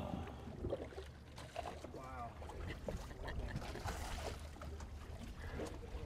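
Faint wind and water noise on the open sea with a low rumble, and a brief faint voice about two seconds in.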